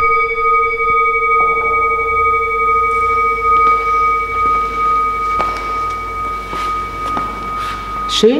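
A struck singing bowl ringing out and slowly fading. Its low tone wavers slightly, and several higher overtones ring steadily above it.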